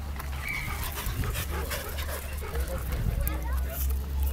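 Dogs at close quarters, with a brief high whine about half a second in, over a steady low rumble and faint background voices.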